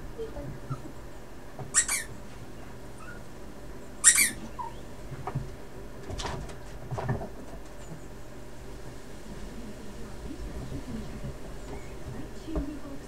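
A miniature pinscher scrabbling after a ball stuck under a sofa, with two short, sharp squeaks about two and four seconds in, the second the louder, and a few softer sounds around six and seven seconds.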